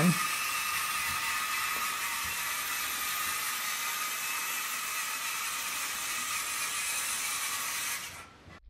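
VEX EDR robot's small electric drive motors whirring steadily as it drives a continuous circular turn, a constant whine with several fixed high pitches over a hiss.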